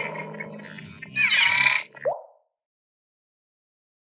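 Animated logo sting sound effects: a rich shimmering sound fading over the first second, then a whoosh with falling pitch, ending in a short rising pop at about two seconds.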